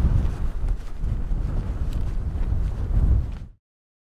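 Gale-force wind buffeting the microphone, with a gusting low rumble. It cuts off suddenly to silence about three and a half seconds in.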